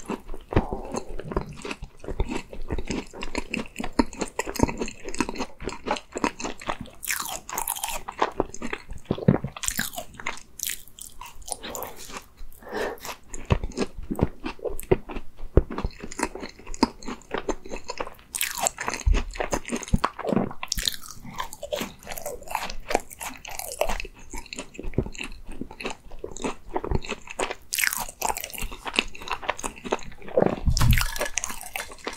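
Close-miked eating sounds of a person biting and chewing a chocolate tart, the pastry shell crunching in repeated sharp bursts between the chewing.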